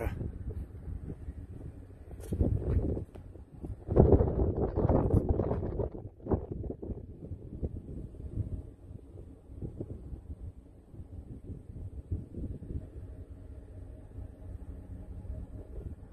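Wind buffeting the microphone in gusts, strongest in the first half, then easing to a lower rumble with a faint steady hum beneath.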